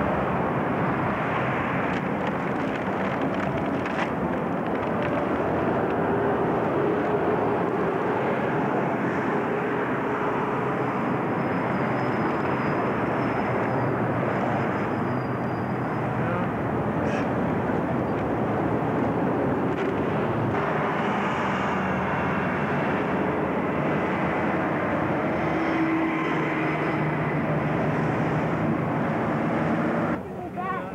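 Steady noise of city street traffic: a continuous wash of engine and tyre sound with no clear single event.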